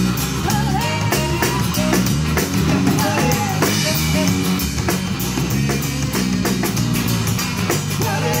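A live band playing: drum kit, electric bass and guitars keep a steady beat under a wavering melody line, in a passage without sung words.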